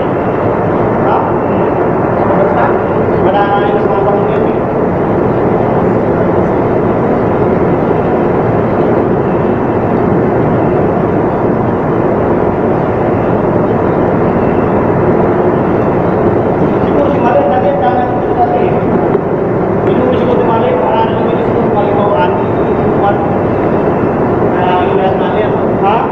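Loud, steady drone of ship's machinery heard inside an enclosed steel pump room, running without a break.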